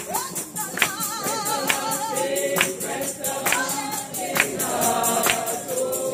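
Gospel music: a choir singing with vibrato over a steady tambourine beat, a strong stroke a little under once a second.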